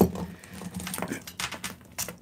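Costume jewelry being handled and sorted: a run of small, irregular clicks and clinks as beads, shells and metal pieces knock together.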